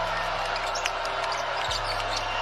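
Basketball being dribbled on a hardwood court, short sharp bounces over steady arena crowd noise, with a low background music bed underneath.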